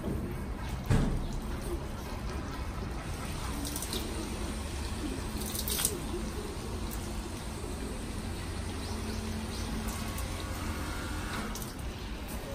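A thin stream of water runs steadily from the spout of a shrine purification fountain (temizuya), splashing into a metal ladle and the stone basin. There are two sharp knocks, one about a second in and one near six seconds.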